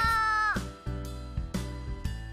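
A child's high voice holds one drawn-out syllable while sounding out the word "ayo", for about half a second, over children's background music with a steady beat.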